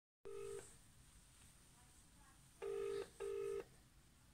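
British telephone ringing tone heard on an outgoing call, not yet answered. The tail of one ring comes just after the start, then a double ring near the end: two short bursts of the steady purring tone close together.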